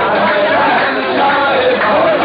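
Several men's voices at once, loud and steady, from a qawwali group in a large hall.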